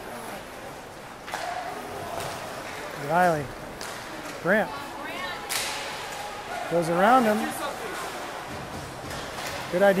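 Ice hockey game in a rink: sharp knocks of puck and sticks against the boards, about a second in and again midway, and several short shouted calls over the hum of the arena.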